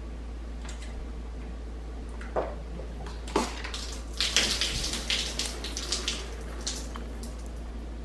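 A few short handling sounds, then about two seconds of gulping and liquid sloshing as a bottled chocolate-coffee protein shake is drunk, with a few last gulps after.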